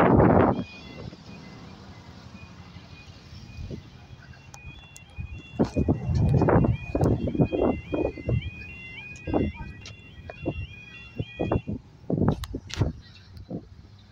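UK level-crossing audible warning: a warbling alarm alternating between two pitches as the barriers lower for an approaching train. It stops about twelve seconds in, once the barriers are down. A car passes close at the start, and irregular thumps and rumbles sound over the alarm.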